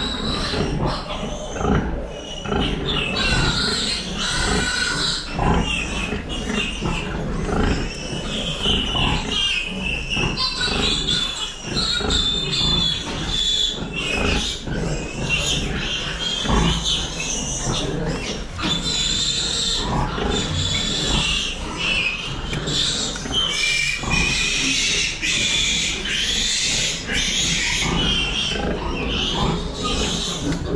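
A litter of piglets squealing constantly while suckling at a sow, with lower pig grunting underneath.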